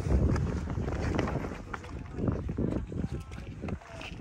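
Wind rumbling on the microphone during a scramble up sandstone rock, with scattered short scuffs of shoes on the rock and faint voices in the background.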